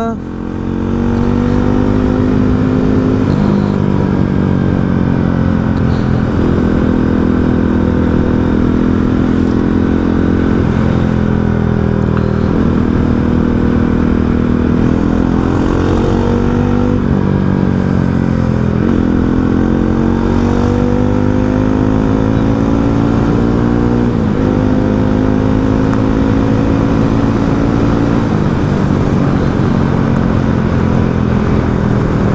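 Motorcycle engine heard from the bike itself while riding. Its pitch climbs steadily under throttle and then drops suddenly, again and again, as it changes gear and eases off, over a steady road and wind rush.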